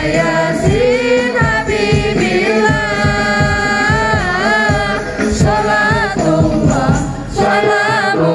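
Devotional song in praise of the Prophet (sholawat), sung with microphone amplification: a slow melody of long held, wavering notes over a regular low drum beat.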